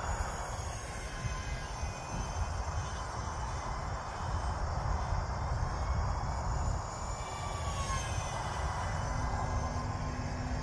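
Faint whine of a small radio-control model jet's twin electric ducted fans (E-flite UMX Me 262) flying overhead, dropping in pitch about eight seconds in as it passes, over a steady low rumble.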